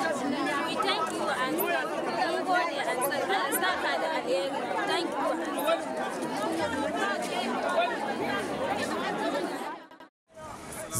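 Many voices talking over one another, a crowd chattering, with people saying thank you. The sound cuts off abruptly just before the end.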